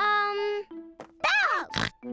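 Cartoon pig characters' voices: a high-pitched held vocal sound, then a rising-and-falling call and a short pig snort near the end, over light background music.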